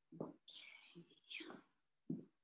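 A person's faint whispered voice close to the microphone, in short broken bits, with light handling noise.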